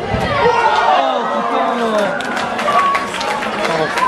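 Several people shouting and calling out over one another on a football pitch, loud cries rising and falling sharply in pitch.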